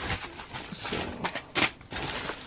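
Thin plastic mailer bag rustling and crinkling in short, irregular bursts as a hand pulls small plastic-packed items out of it.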